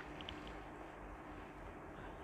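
Low-level rustling of printed cotton fabric being lifted and turned over by hand over faint room noise with a steady low hum.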